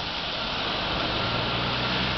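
A heavy truck's diesel engine running low and steady, with a steady hiss over it.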